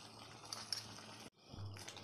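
Faint stirring of a thin curd gravy with a spatula in a nonstick pan: soft wet squishing with a few light clicks about half a second in. The sound drops out briefly to silence a little past the middle.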